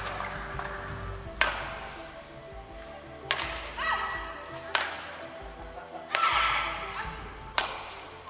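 Badminton rally: sharp cracks of rackets striking the shuttlecock, five in all, about every one and a half seconds, with shoe squeaks on the court. Music plays steadily underneath.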